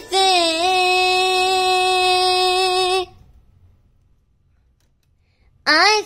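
A girl's singing voice holds the last long note of a pop ballad for about three seconds, then stops, and near silence follows.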